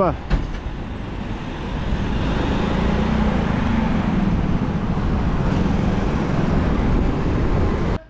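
Busy city-road traffic: cars and trucks passing close by, a steady wash of engine and tyre noise that swells about two seconds in, with a low engine drone underneath.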